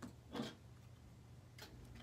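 Faint handling sounds of a clear acrylic quilting ruler being shifted into place on a cutting mat: a soft knock about half a second in and a sharper light click near the end, over a low steady hum.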